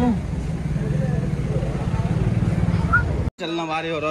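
Loud, steady low rumble of street noise on a handheld phone microphone, with faint voices, cut off abruptly about three seconds in. A man's voice follows.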